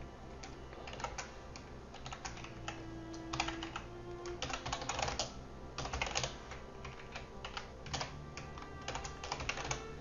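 Typing on a computer keyboard: keystrokes come in short bursts with pauses between them.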